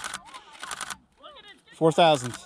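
Camera shutter firing in rapid bursts: two quick clusters of clicks in the first second, as the eclipse is photographed at a set exposure of 1/60 s.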